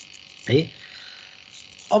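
A single short vocal sound from the lecturer about half a second in, falling in pitch, between phrases of speech. Otherwise there is a faint steady hiss from the online-meeting audio, and speech picks up again at the very end.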